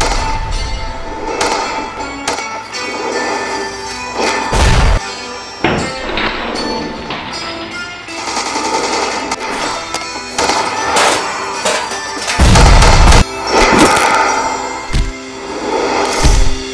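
Trailer-style music with gunshots and heavy booms cut in over it: a string of sharp shots and two deep booms, the longest and loudest near the end.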